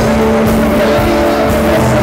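Live country band playing, led by an electric guitar holding long sustained notes over the full band.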